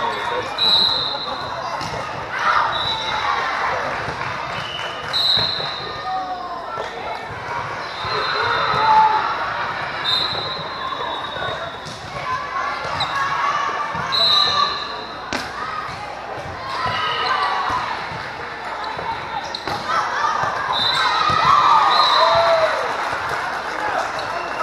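Indoor volleyball in a large, echoing gym hall: volleyballs being struck and bouncing, players and spectators calling and talking, and short high whistle blasts every few seconds.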